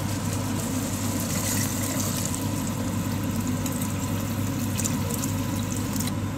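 Water being poured into a pan of chicken and tomato masala, over a steady low mechanical hum.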